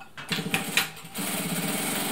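Siruba DL7200 industrial lockstitch sewing machine running to drive its bobbin winder, winding a fresh bobbin. The first second is uneven, then about a second in it settles into a steady high-speed run.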